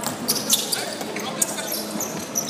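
Indoor basketball play: a basketball bouncing on a wooden court in a few sharp knocks, with players' sneakers squeaking and running on the floor, echoing in a large hall.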